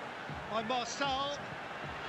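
Mostly speech: a quieter voice speaking for about a second, over a low steady background hiss.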